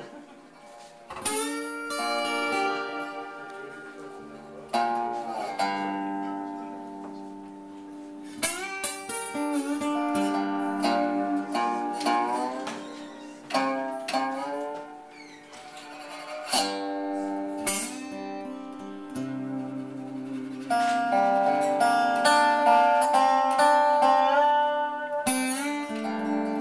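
Acoustic guitar and steel guitar playing an instrumental tune together: fingerpicked guitar notes under sliding steel guitar notes played with a bar. The music grows louder and busier near the end.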